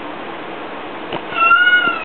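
A black domestic cat gives one long, loud meow of steady pitch starting near the end: a cat begging to be let out of a closed room.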